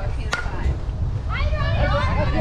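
Wind buffeting the microphone, with one sharp smack about a third of a second in; people's voices start talking past the middle.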